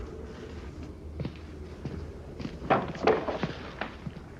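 A few footsteps on a wooden hut floor: one about a second in, then several closer together near the end.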